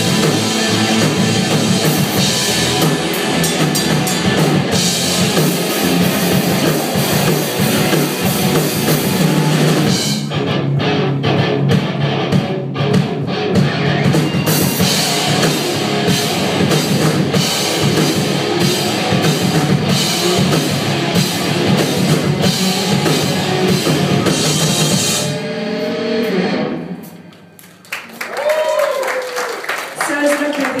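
Live rock band with distorted electric guitars, bass and a drum kit playing loud and full, heard through a phone's microphone from the back of the room. The song ends about 26 seconds in.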